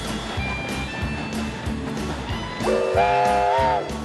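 Background music, with a chime steam locomotive whistle sounding one blast of about a second laid over it near the end: several tones sounding together as a chord, bending up slightly as it opens, then cutting off.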